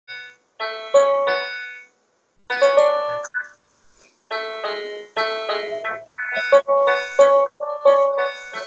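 Electronic keyboard playing melody notes in piano-like tones: two short phrases broken by brief silences, then a more continuous run of notes from about halfway.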